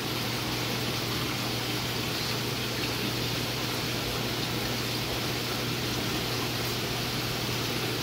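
Saltwater aquarium system running: a steady rush of circulating water with a constant low pump hum.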